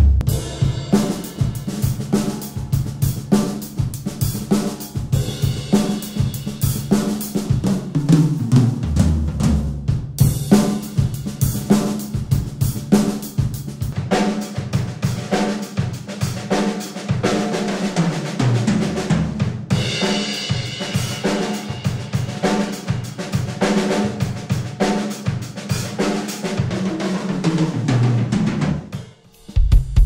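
Pearl Decade Maple drum kit (six-ply maple shells, 22" kick, 14x5.5" snare, rack and floor toms) with Zildjian cymbals, played in a full groove of kick, snare, toms, hi-hat and cymbals. It is heard first through the full close-mic mix and later through a single room microphone. The playing stops shortly before the end.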